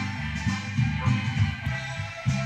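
Music playing from a vinyl LP on a Dual 1257 belt-drive turntable: a band track with a prominent bass line stepping from note to note.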